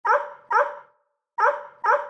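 A dog barking: four short barks in two quick pairs, each cut off sharply.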